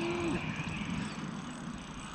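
A brief, low voiced sound from a man right at the start, like a short hum or the tail of a laugh, then faint, steady outdoor background noise.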